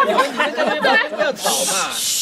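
Several people's voices chattering, then from about one and a half seconds in a long loud "shh" hushing the group.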